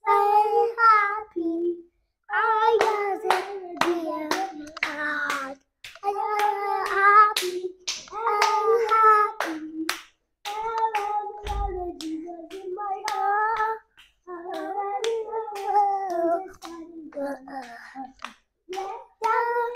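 Young children singing a Christian children's chorus, clapping their hands along with the song. The singing comes in phrases with short breaks between them, and the claps are sharp and frequent.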